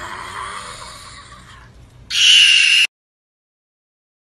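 A high, strained squeal, then a much louder, piercing shriek about two seconds in that cuts off abruptly.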